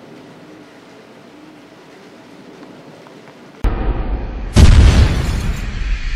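Logo sting sound effect: a loud low rumble cuts in suddenly about two-thirds of the way through, and about a second later a heavy hit lands, trailing off into a hiss. Before it there is only faint outdoor background.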